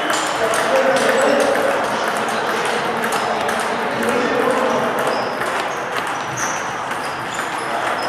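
Table tennis balls being hit at several tables at once: a steady, irregular scatter of light clicks of the ball off paddles and tabletops, some with a short high ring, in a large hall.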